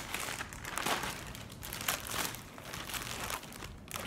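Thin plastic packaging bag being handled and crinkling in irregular bursts close to the microphone.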